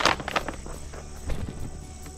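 A plastic seed bag rustling as it is handled and set down on loose tilled soil: a brief crinkle at the start, then a few light knocks.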